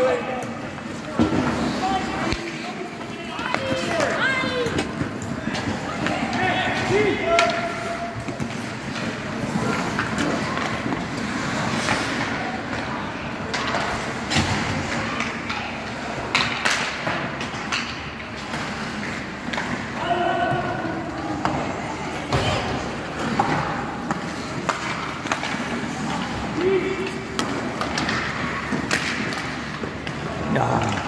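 Ice hockey game sound in a rink: skates scraping the ice and sticks and puck clacking, with several sharp knocks, most around the middle. Voices of players and onlookers call out over it throughout.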